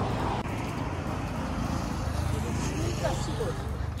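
Road traffic noise: a steady rumble and rush of cars on the road alongside, with a faint voice about three seconds in.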